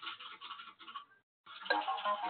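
Kahoot quiz game audio played from the computer: a scratchy, irregular intro sound for about a second, a brief pause, then the game's answer-countdown music starting about one and a half seconds in.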